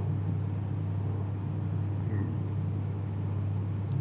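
A pause in the talk, filled by a steady low hum on the recording and a brief faint murmur about two seconds in.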